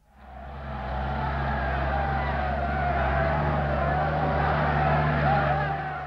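Motor vehicle engines running steadily under a noisy jumble of crowd sound, fading in over the first second and fading out near the end.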